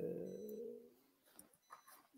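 A man's drawn-out hesitation sound, a held 'eee' that trails off over about the first second, followed by near silence with a few faint clicks.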